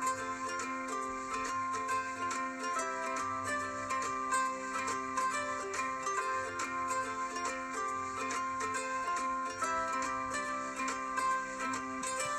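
Background music: a light instrumental of quickly repeated plucked notes over steady held tones.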